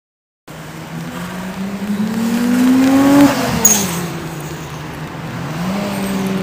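A car drives past on a race track, coming in from silence about half a second in. Its engine note rises as it nears and drops after it passes, about three seconds in, and a brief sharp hiss follows just after the pass. Near the end the engine note of the next cars, a group of Nissan Skylines, rises as they approach.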